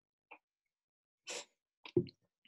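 Near silence broken by a short, noisy breath sound from a person just past halfway, with a faint blip early on and a few brief mouth clicks near the end.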